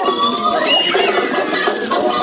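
Loud dance music played over a theatre sound system for a stage dance routine, with a pitched line that rises and then falls about halfway through.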